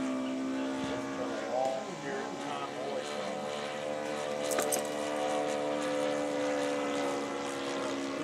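Radio-controlled P-51 Mustang model's O.S. 95 glow engine running at steady throttle in flight overhead, its propeller note holding one even pitch.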